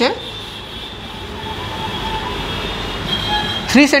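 Steady low background rumble with a few faint thin tones over it, and a man's voice briefly near the end.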